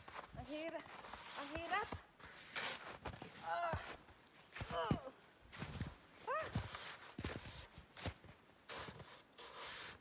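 A snow shovel scraping and pushing through snow in several separate strokes, with feet crunching in the snow and short vocal exclamations of effort between strokes.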